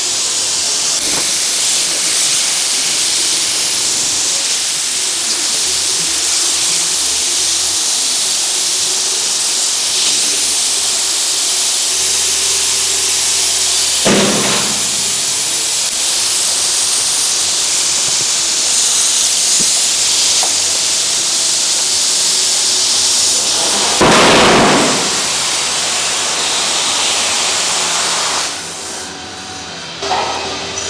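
Oxy-acetylene cutting torch on a motorized track carriage hissing steadily as it cuts through a steel beam. There are two brief louder rushes, about halfway and two-thirds through, and the hiss drops away near the end.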